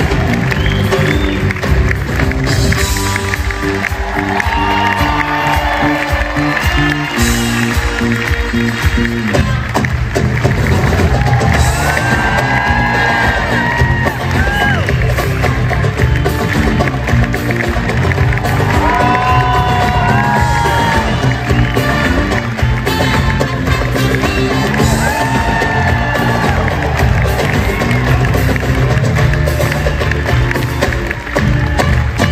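Live musical-theatre band and cast singing an up-tempo number through the theatre's sound system, with a steady bass beat, heard from the audience seats. Some audience cheering rides over the music.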